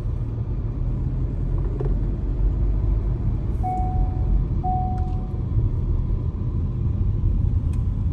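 Steady low rumble of a car's engine and tyres on the road, heard from inside the cabin while driving. Two short faint beeps sound about a second apart near the middle.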